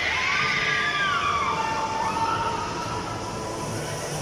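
Spinning arm thrill ride in motion: high tones glide down over the first second and a half, then hold steady over a low rumble.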